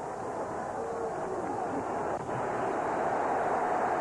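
Stadium crowd noise from a large football crowd, a steady din that grows a little louder toward the end, with a faint shout about a second in.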